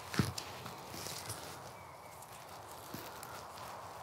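Pruning shears snipping through a length of twine: one short sharp snip just after the start, then soft rustling of clothing and grass with a few faint clicks as the twine is handled.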